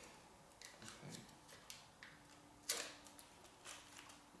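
Faint crinkling and crackling of a white protective sheet being peeled off the glue face of a yellow sticky insect trap, in a scatter of small soft ticks.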